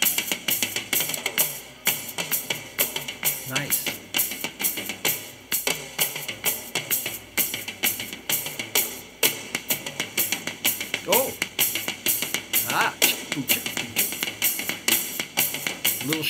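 Live drum kit solo: a dense, even stream of strokes over the kit, with the feet keeping a steady shuffle between bass drum and hi-hat.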